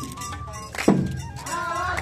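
Japanese festival hayashi music accompanying a float dance: a bamboo flute holds a note, a single drum stroke sounds about a second in, and a voice starts singing near the end.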